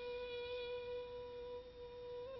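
A single quiet note on a bowed string instrument, held steady without a break, in Persian classical music.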